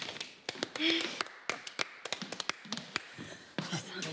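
A quick, irregular run of sharp taps and clicks close to the microphone, with a couple of brief voice sounds, about a second in and near three seconds.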